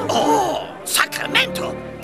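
Short wordless vocal sounds from a cartoon voice, like a throat-clearing, over soft background music; a few crowd voices trail off just at the start.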